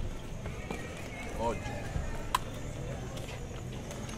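A man's voice counting aloud ("ocho") over steady outdoor background noise, with one short sharp click a little over two seconds in.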